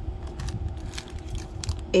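Small plastic jewelry bag with a cardboard price card being handled: soft rustling with a few faint clicks.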